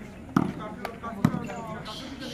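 A volleyball being struck twice, about a second apart, sharp slaps over shouting from players and onlookers.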